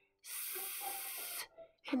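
A person making a long hiss with the mouth, a little over a second long, while sounding out the word 'answer' part by part.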